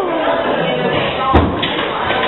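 Voices in a large hall, one sliding slowly down in pitch like a vocal warm-up, with a single thump about a second and a half in.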